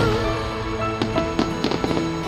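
Aerial fireworks going off over music with held notes, a rapid run of sharp cracks coming in the second half.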